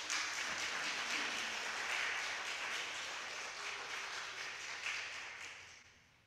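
A small congregation applauding in a church sanctuary: a short round of clapping that swells, holds and dies away near the end.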